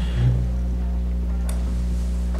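Steady low electrical hum in the recording, with a brief low murmur just after the start and a single faint click about a second and a half in.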